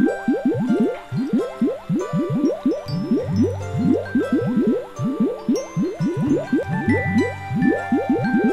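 Cartoon bubble sound effects: a rapid, unbroken stream of short rising 'bloop' sweeps, several a second, over background music.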